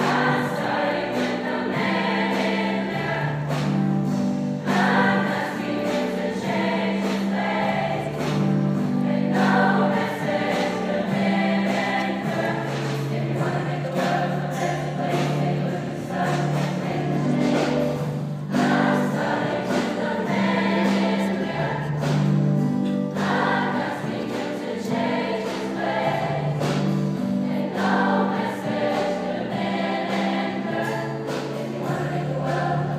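Large choir singing a gospel-style song in full voice, with piano accompaniment; the sung phrases swell and restart every few seconds.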